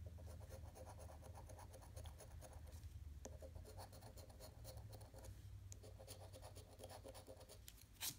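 Faint, rapid scratching of a metal coin's edge scraping the latex coating off a paper scratch-off lottery ticket, in several quick runs of strokes with brief pauses.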